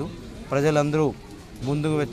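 A man's voice speaking in two short, drawn-out phrases with a pause between them.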